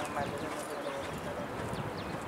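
Hoofbeats of a racehorse galloping, with voices talking in the background.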